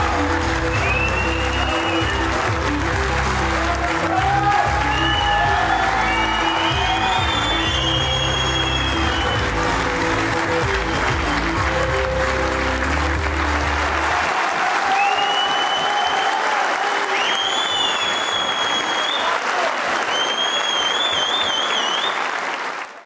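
A large crowd applauding continuously over loud music with a heavy bass, with shrill whistles rising and falling over the clapping. The music cuts out about 14 seconds in, leaving the applause and whistles.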